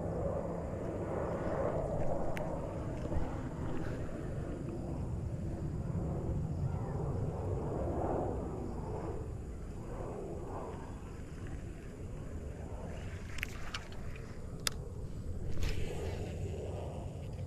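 A steady low outdoor rumble that swells and eases. Near the end come a few sharp clicks as a cast lands and the baitcasting reel is handled.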